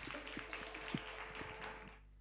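Light scattered clapping in a studio, a dense patter of hand claps that cuts off at the end.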